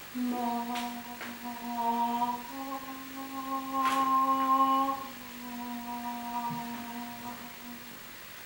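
A woman humming three long, steady notes in turn, the middle one a little higher and loudest, with faint clicks of handling in between.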